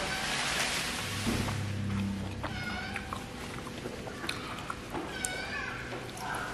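Two short high-pitched animal calls, of the kind a cat makes when meowing, about two and a half and five seconds in, each rising and falling, over a faint hiss and small clicks.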